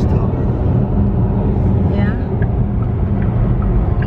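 Steady low rumble of road and tyre noise inside a car cabin at highway speed.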